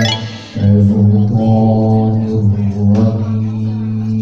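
A man chanting Qur'an recitation in the melodic tilawah style into a microphone, holding long, steady notes. The sound dips briefly about half a second in, then the held note resumes.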